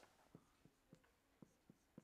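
A marker pen writing on a whiteboard, very faint: about six light ticks of the pen tip against the board, spread over two seconds.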